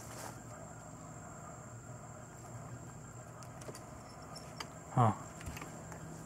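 Quiet outdoor background: a faint steady low hum and a thin, high, steady whine, with a few light rustles and clicks.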